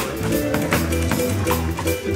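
Live band playing an instrumental passage: drum kit keeping a steady beat, with electric bass and electric guitar.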